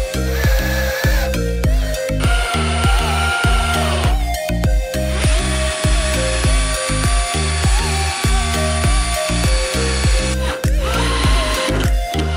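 Cordless drill whining in several runs of one to five seconds as it bores into a wooden table leg, over background music with a steady beat.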